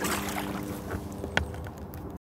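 A plastic kayak being paddled through calm, shallow water: water swishing and dripping off the paddle under a faint steady hum, with one sharp click about one and a half seconds in.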